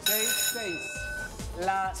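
A bright, bell-like electronic chime strikes at once and rings out, fading over about a second: the game's sound cue as the 20-second countdown starts. Music runs under it, and a voice comes in near the end.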